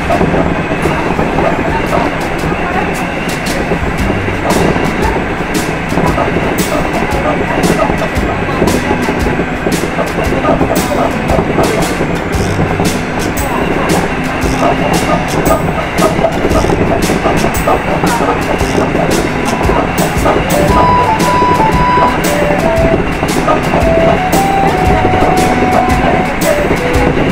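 Hankyu electric train running at speed, heard from the driver's cab, with frequent clicks as the wheels pass over rail joints. A few short ringing tones sound near the end.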